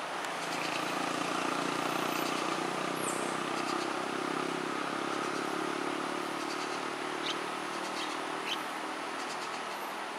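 A motor vehicle's engine hum passing close by, swelling about a second in and slowly easing off, with two short high chirps near the end.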